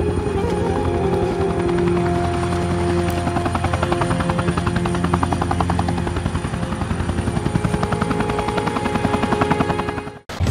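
Helicopter rotor beating in a fast, steady rhythm throughout, over sustained background music.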